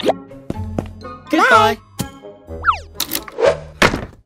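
Cartoon soundtrack: light children's background music with a character's short wordless vocal sound about a second and a half in, and quick cartoon sound effects, including a fast falling glide near the three-second mark.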